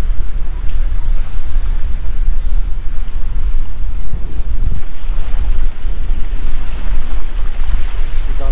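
Strong wind buffeting the microphone in gusts, with small lake waves washing onto a pebbly shore under it.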